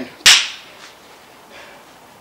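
A single sharp hand clap, dying away quickly.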